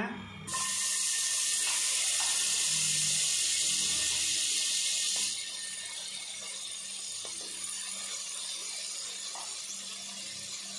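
Butter sizzling as it melts in hot oil in a pan: a loud hiss that starts about half a second in, then drops after about five seconds to a quieter, steady sizzle with small crackles.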